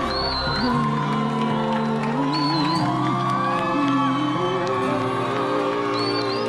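A woman singing a slow ballad with vibrato over sustained chordal accompaniment, joined by a few short rising whoops or whistles from the audience.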